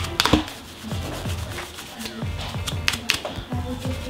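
Small stiff cleaning brush scrubbing the blade of an electric hair clipper, a run of irregular scratchy brush strokes flicking cut hair out of the teeth.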